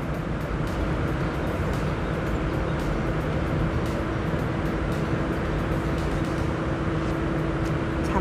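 Steady machine hum with one constant low tone over an even background noise, with faint crackles of a paper rice sack being handled.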